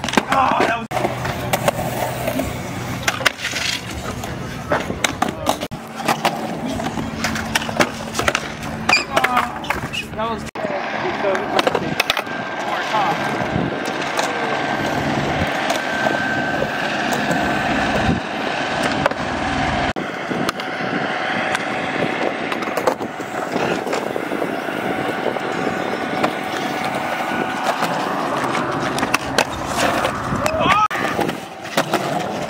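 Skateboard wheels rolling on concrete, with repeated sharp clacks of boards hitting and grinding along a concrete ledge.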